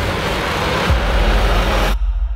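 Trailer sound design: a loud rushing whoosh over a deep rumble, swelling and then cutting off abruptly near the end.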